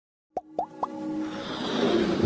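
Three quick plop sound effects, each sweeping up in pitch, about a quarter second apart, followed by a swelling musical riser of an animated logo intro.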